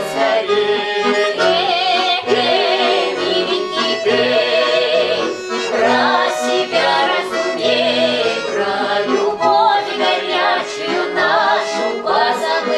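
Button accordion playing a Russian folk-style song, with women's voices singing over it in phrases, wavering with vibrato.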